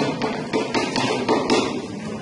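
A rapid, fairly even series of sharp taps, about four a second, over room noise.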